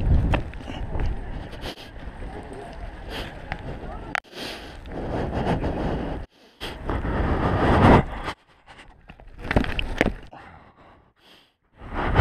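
Wind rumbling on a head-mounted action camera's microphone while a parkour runner moves, with scattered footfall and landing knocks on concrete. The sound cuts in and out sharply several times.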